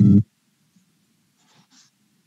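A single brief, loud burst of sound lasting about a quarter second, coming over the video call from a participant's open microphone. It is followed by a faint low hum, with a couple of soft sounds near the end.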